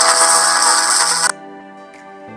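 Soundtrack of a freshly rendered channel intro playing back: loud, dense music and sound effects that cut off suddenly about 1.3 s in, leaving quieter steady background music.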